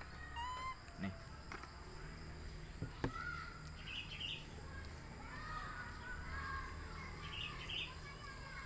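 Faint, short high animal chirps, with a few light sharp clicks about one and three seconds in, over a steady low outdoor background.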